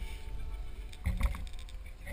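Low rumble of handling and wind noise on a hand-carried GoPro's microphone, with a sharp knock a little past a second in.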